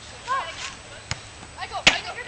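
A sharp smack of a volleyball being struck near the end, with a fainter hit about a second in, and distant voices calling.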